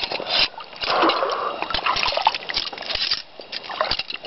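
Shallow creek water sloshing and splashing as hands and legs move in it, with short clicks and rattles from the steel chain and coil-spring foothold trap being handled.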